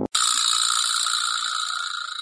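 A sound effect added in editing: a sudden, steady shimmering rattle or jingle, high and bright, that sets in just after the start and slowly fades.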